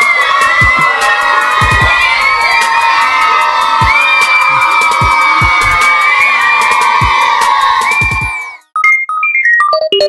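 A group of children cheering, shouting and screaming together with frequent sharp claps. It cuts off abruptly near the end, and a short electronic keyboard jingle of quick separate notes starts.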